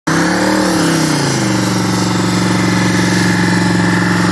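Car engine held at high revs during a burnout, the rear tyres spinning and smoking. Its pitch swings up and down over the first second and a half, then holds steady and loud.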